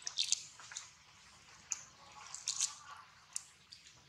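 Macaques eating fruit: a string of short, wet clicks and smacks of biting and chewing, the loudest cluster in the first half second and another a little past halfway.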